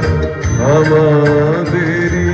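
Music: a melody line sliding up and down in pitch over a steady low accompaniment.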